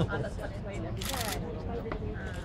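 Several people talking close by over a hubbub of other voices, with a brief rustle about a second in.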